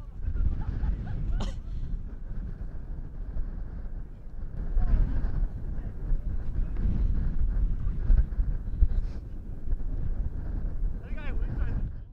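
Strong wind buffeting the microphone: a loud, uneven low rumble throughout. Indistinct voices and shouts of people break through now and then, around a second in, mid-way and near the end.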